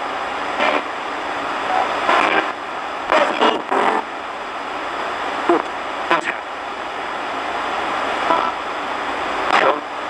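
RadioShack 20-125 portable radio run as a ghost box, sweeping through stations: steady static hiss broken every second or so by short, chopped-off fragments of voices and broadcast sound.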